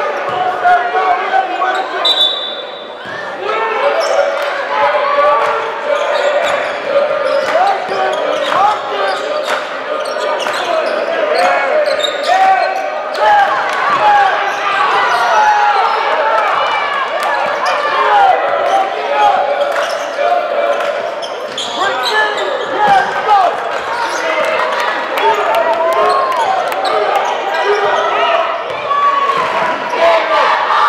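Gymnasium basketball game sound: many voices of players and crowd shouting and talking, with a basketball dribbling on the court and short sharp clicks and squeaks throughout. A short high whistle blast sounds about two seconds in, followed by a brief lull.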